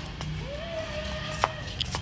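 Walking and handling noise on a handheld phone's microphone: a steady low rumble with a few sharp clicks, and a faint long held call in the distance from about half a second in.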